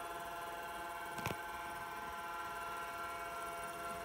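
Apple Lisa 2/10 computer running with its 10 MB hard drive: a steady hum made of several steady tones, with a single click about a second in.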